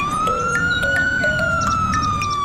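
Police siren sound effect: one long wail that rises over about a second, then slowly falls, over a low rumble.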